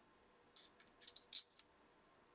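Light metallic clicks and scrapes as the small steel parts of a milling cutter chuck, a threaded-shank cutter and its collet, are handled in the fingers. A short cluster of them starts about half a second in and lasts about a second, with near silence around it.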